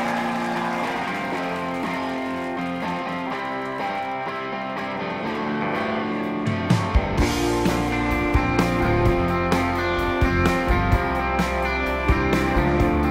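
Live rock band starting a song: electric guitars open with ringing, sustained chords. About six and a half seconds in, bass guitar and drum kit come in and the full band plays on.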